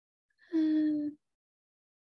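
A short wordless vocal sound, a single held note that falls slightly in pitch and lasts just over half a second.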